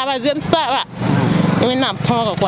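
A woman speaking in short phrases, her voice broken about a second in by half a second of rushing noise with a low rumble before it resumes.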